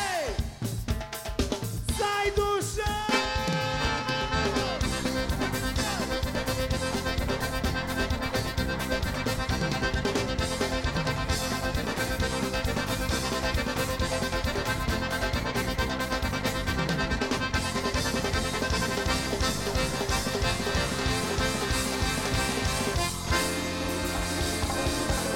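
Live gaúcho dance-band music with accordion and drum kit: after a short run of gliding, falling notes, the full band comes in about three seconds in and plays on with a steady, repeating beat.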